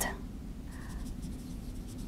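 Dry-erase marker writing on a whiteboard: faint scratchy strokes of the felt tip on the board.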